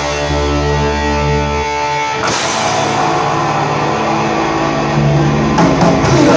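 Live rock band with electric guitars, bass and drums: a chord is held ringing for about two seconds, then the cymbals and drums come back in with the full band.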